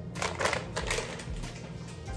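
Plastic food packaging crinkling and crackling as it is handled, with a cluster of sharp crackles in the first half-second and lighter rustling after.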